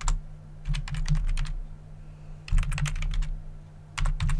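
Computer keyboard typing: a single keystroke at the start, then two quick runs of keystrokes, one about a second in and one about two and a half seconds in.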